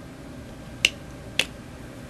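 Two sharp clicks about half a second apart, a little under a second in: small hard plastic and metal parts knocking together as a bolt is worked through a hole in a plastic bottle cap.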